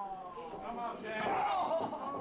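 Men's voices talking and shouting, with a single sharp smack of a punch landing about a second in.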